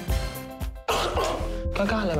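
Show bumper music cuts off abruptly about a second in, followed by a child coughing hard.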